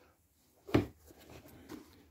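A single dull knock about three-quarters of a second in, then faint rustling: hands grabbing and pressing the stiff boot of a Bauer hockey skate.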